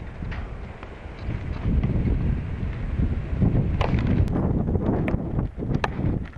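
Wind buffeting the camera microphone: a rough, uneven rumble that grows stronger after the first second or so, with a few light clicks in the second half.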